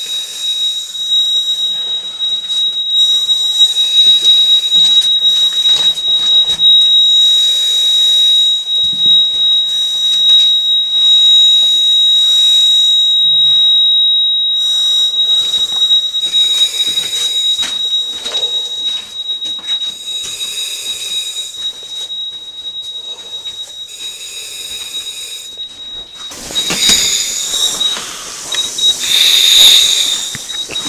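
A steady, high whistle, the low-pressure warning whistle of a compressed-air breathing apparatus, signalling that the cylinder is running low. A rush of breath through the regulator comes every few seconds. Near the end the whistle breaks up into short bits under louder rustling and knocking.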